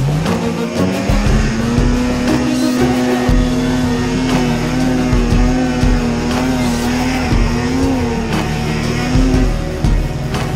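Snowmobile engine revving up over the first second or so, then held at high revs with a slight waver on a climb through deep snow, easing off near the end. Music plays underneath.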